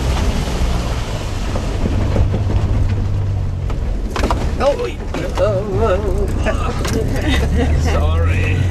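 Engine and road noise inside a Jeep's cabin as it drives slowly over a muddy dirt track: a steady low drone with scattered knocks and rattles, most of them two to four seconds in. People laugh over it near the end.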